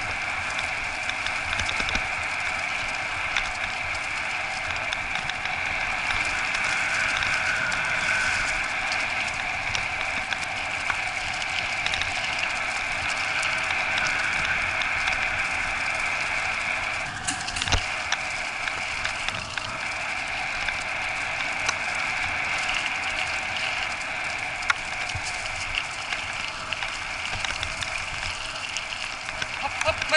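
Steady rushing rumble of a dryland dog rig rolling fast over a dirt and leaf-litter forest trail, pulled by a team of four Siberian huskies. A single sharp knock comes a little past halfway.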